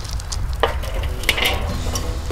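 Steel wire cooking grate being set down on a charcoal kettle grill: two metallic clanks, the second ringing briefly, over light crackling. Music begins near the end.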